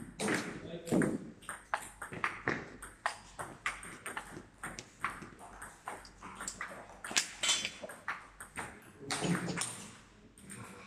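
Table tennis rally: the ball clicks sharply off the bats and the table, back and forth, many times in quick succession, with the hall adding a slight echo.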